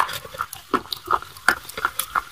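Close-miked chewing of crunchy white chalk-like sticks: a string of short, separate crunches and wet mouth sounds, several a second.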